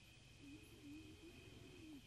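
Near silence: faint room tone, with a very faint low tone wavering in pitch from about half a second in.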